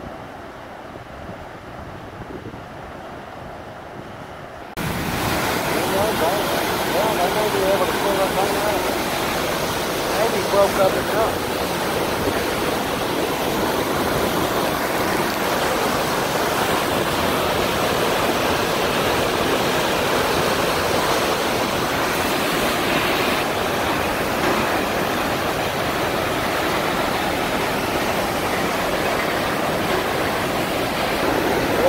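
Loud, steady rush of river water pouring through a dam gate past a wrecked barge wedged in it, cutting in abruptly about five seconds in after a quieter stretch of wind and distant water.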